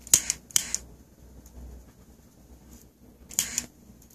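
A few sharp, dry clicks. Four come in quick succession in the first second, and a short cluster follows a little past three seconds.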